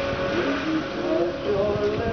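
A slow pop ballad playing, its melody held and gliding from note to note over a low rumble.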